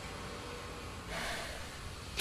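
Quiet room tone with one short, soft breath from a person about a second in.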